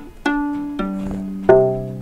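Open strings of an acoustic viola plucked one after another, D, then G, then the low C, three notes stepping down in pitch, each left to ring.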